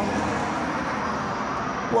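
Steady road traffic noise from the street.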